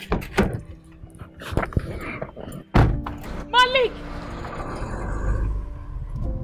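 A few sharp knocks in the first three seconds, then a woman's loud shout about three and a half seconds in, over background film music.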